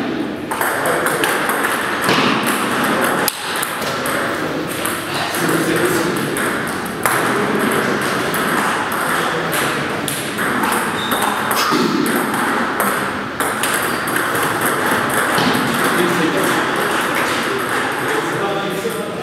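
Table tennis ball clicking off paddles and the table in quick rallies, with more ball clicks from other tables in the hall and voices in the background.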